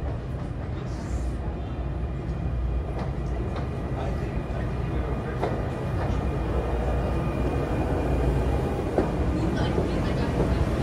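New Jersey Transit Arrow III electric multiple-unit train arriving at the platform, a steady low rumble growing slowly louder as it draws close and runs past, with a few scattered clicks.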